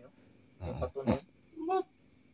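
Crickets chirping in a steady high drone, with three short voice-like cries or grunts over it in the second half: one sweeps down in pitch and the last is short and tuneful.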